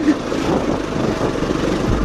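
Bajaj Pulsar NS200's single-cylinder engine running steadily under load as the motorcycle climbs a steep hill path.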